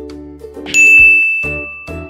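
Light background music, then about two-thirds of a second in a single bright ding, a subscribe-button notification-bell sound effect, rings out loudly and fades over about a second.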